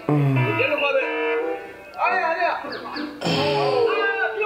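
Speech over background music, the soundtrack of the video clip being watched.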